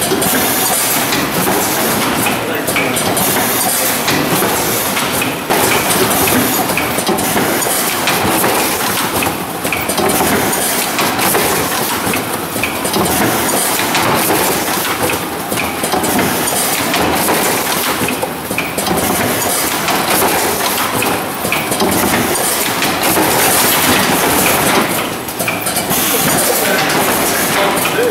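Hamrick 300D automatic case packer running: a loud, steady mechanical clatter of conveyors, pneumatic actuators and product being packed into cardboard cases. The noise dips and rises in a loose cycle every few seconds as the machine packs case after case.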